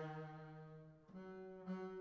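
Bowed double bass: a held note dies away, and just after a second in a new, slightly higher note starts softly and begins to swell. It is a demonstration of the common habit of dropping back in dynamic and then starting a big crescendo.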